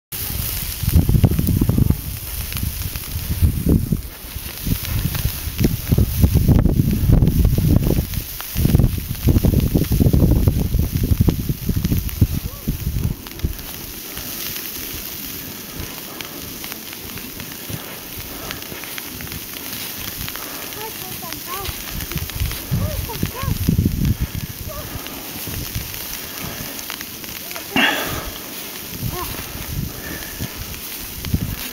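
Boots trudging through deep fresh snow, crunching and crackling with each step, under a steady hiss. For the first dozen seconds, heavy low rumbling on the microphone comes and goes, then it settles.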